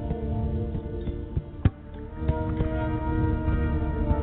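Solo fretless electric guitar playing ambient music: layered, sustained notes with occasional picked attacks. A sharp pluck about a second and a half in is followed by a brief drop in the sound, which swells back up.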